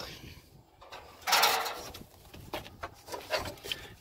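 A short scraping rustle about a second in as a stiff floor covering is shifted in an old car's rusty trunk, followed by a few faint clicks and light knocks of loose debris.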